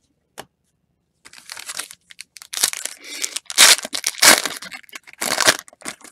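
Wrapper of a 2019 Topps Series 1 baseball card pack being torn open and crinkled by hand. A run of crackling rips starts about a second in, with the loudest ones in the middle and again near the end.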